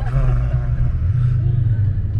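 A 4x4's engine and tyres on sand, heard from inside the cabin as a loud, steady low rumble while it drives over desert dunes.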